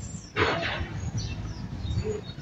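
Faint outdoor ambience: a short hiss about half a second in, and a few high, brief bird chirps.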